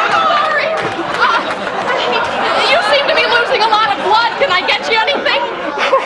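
Several voices crying out at once: a man yelling in pain and women shrieking and exclaiming over each other, with no clear words.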